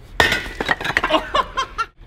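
A steel Thor's-hammer replica smashing into a stack of concrete cinder blocks: one heavy impact about a quarter second in, then the blocks cracking and tumbling with chunks of concrete clinking against each other. The sound cuts off abruptly near the end.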